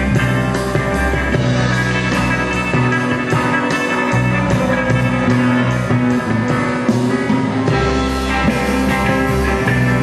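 A rock band playing live: electric guitars over a stepping bass line and drums with steady cymbal strokes.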